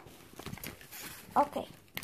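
Faint rustling and small clicks of cosmetic packaging being handled as items are taken out of a suitcase pocket and set down on fabric.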